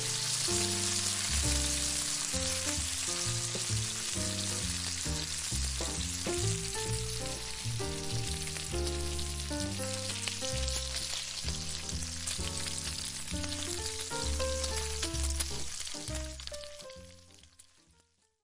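Bacon sizzling and crackling in a frying pan, under background music with a moving bass line and chords; both fade out near the end.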